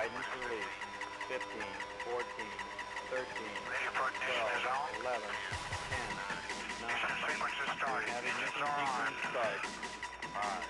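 Rocket-launch countdown soundtrack: a launch-control voice over background music with steady held tones.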